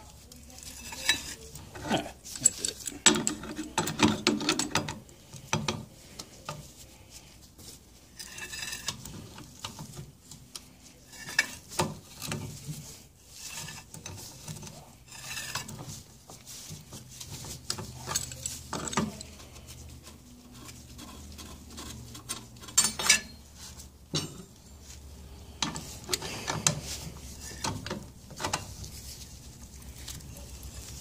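Irregular metal clanks, clicks and scraping as a pipe wrench grips and twists the cut-off driveshaft of an outboard gearcase, knocking against the water pump housing. The loudest cluster of knocks comes a few seconds in.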